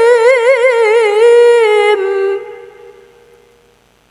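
A single voice reciting the Qur'an in melodic tilawah style, holding a high note with rapid wavering ornaments. The phrase ends a little over two seconds in, and the sound dies away over the next second and a half.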